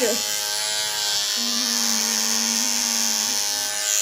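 A small VEX IQ brush robot's electric motor spinning its brush, giving a steady buzz with many overtones. A fainter low tone joins it for a couple of seconds in the middle.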